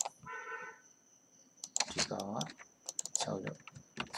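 Computer keyboard and mouse clicks, several sharp separate taps while a SketchUp model is being edited, with people talking. A short steady buzzing tone sounds near the start.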